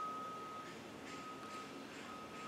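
Quiet room tone with a faint, thin steady high tone that cuts out briefly and comes back, twice.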